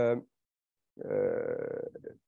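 A man's voice hesitating: a held 'uh' trails off, a short silence follows, then a low, creaky, throaty voiced sound lasting about a second while he thinks.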